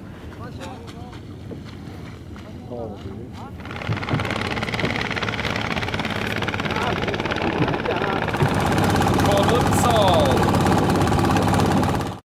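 Longboat's inboard engine running steadily from about four seconds in, after a breakdown. Before that only faint voices.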